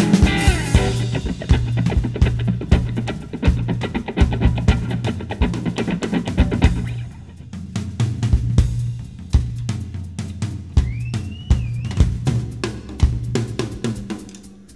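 Drum solo on a rock-and-roll drum kit: rapid snare, bass drum, tom and cymbal strokes, with an upright double bass still plucking short low notes beneath. The higher guitar chords fade out about a second in, leaving drums and bass.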